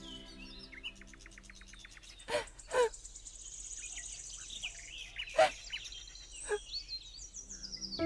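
Small birds chirping and trilling in quick, high notes, with four sharp short knocks, the loudest about two and a half and five and a half seconds in.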